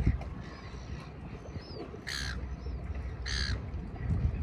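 A crow gives two harsh calls about a second apart, with faint small-bird chirps, over a low rumble of wind on the microphone.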